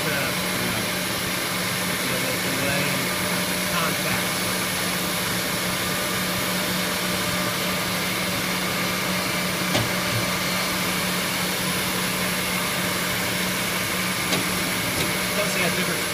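Two Eldorado gun drilling machines running together mid-cut: a steady machine drone with a constant low hum and a high hiss, unchanging throughout.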